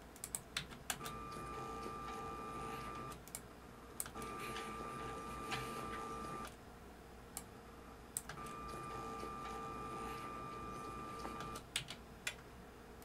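Computer keyboard keys clicking a dozen or so times. Between the clicks come three stretches of a steady high-pitched hum, each lasting two to three seconds and starting and stopping right at a key press.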